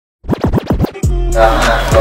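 DJ turntable scratching, about six quick back-and-forth strokes in under a second, then hip hop music with sustained notes comes in.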